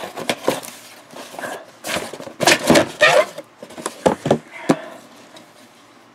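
Paper and packaging handled on a desk: irregular rustling with sharp knocks and clicks, loudest in a burst about halfway through, then a few short clicks.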